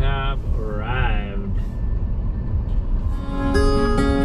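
Low, steady rumble of a car driving slowly, heard from inside the cabin, with two brief vocal sounds in the first second or so. Acoustic guitar music fades in about three seconds in.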